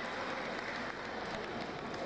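Steady, echoing background din of a large indoor sports hall during play, with a few faint knocks.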